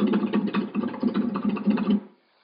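Flamenco guitar played with fast rasgueado strumming: a rapid, unbroken run of finger strokes across the strings that stops abruptly at the very end.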